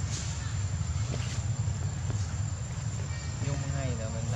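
Faint background human voices over a steady low rumble, with a short wavering voice in the last second.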